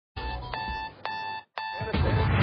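Opening theme music for a TV segment: steady ringing tones punctuated by three sharp hits about half a second apart, with a brief break before the third.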